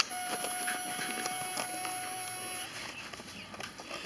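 A steady, unwavering high tone, like an electronic beep, holds for about two and a half seconds and then cuts off suddenly; a few faint clicks and handling noises follow.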